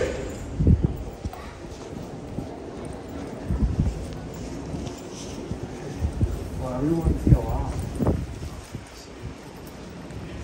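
Footsteps going down a stairway and along a station platform: irregular low thumps, with a brief voice in the background about seven seconds in.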